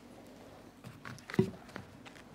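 A pause in a quiet hearing room: a few faint clicks, then one brief low vocal sound about one and a half seconds in.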